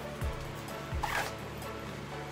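The zipper of a black fabric baby bag being pulled open, one quick pull about a second in, with a few soft knocks of the bag being handled. Background music plays underneath.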